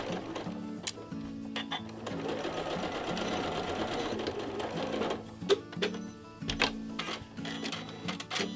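Janome Horizon computerized sewing machine stitching a curved seam through cotton fabric, running in short stop-start runs as the fabric is eased around the curve, with a few sharp clicks in the second half. Background music plays underneath.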